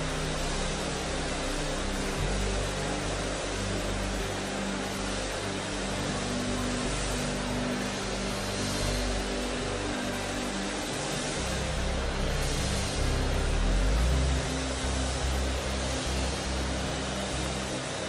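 A large congregation praying aloud all at once, a dense wash of overlapping voices, over a soft keyboard pad holding low sustained chords.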